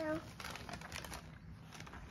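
Soft crinkling and rustling of gift wrap and toy packaging being handled, a scatter of small clicks and crackles.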